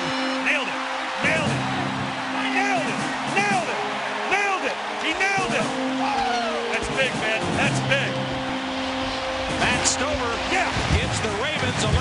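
Stadium crowd cheering and yelling as a field goal is kicked, many voices rising and falling at once, over orchestral film music with long held notes.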